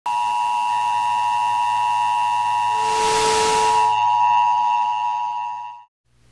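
Broadcast 'please stand by' tone: a steady electronic tone made of several pitches held together over a low hum, with a burst of static hiss about halfway through. It cuts off suddenly just before the end.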